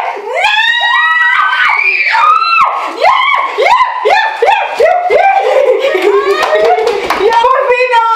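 Young women shrieking and laughing loudly, a run of quick laughing cries followed by long high-pitched shrieks, as a raw egg is broken on one's head.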